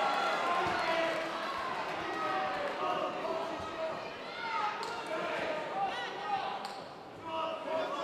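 Several voices shouting over one another from around a fight cage, typical of cornermen and spectators calling to grappling fighters, with a couple of sharp knocks about five and about seven seconds in.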